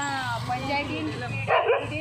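A dog barks once, loudly, near the end, over people talking.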